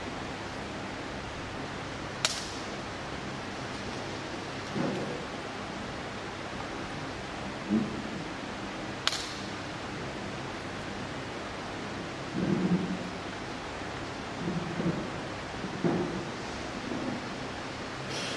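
Steady hiss of a quiet room, broken by two sharp clicks about two seconds and nine seconds in and several short soft low sounds of people moving about.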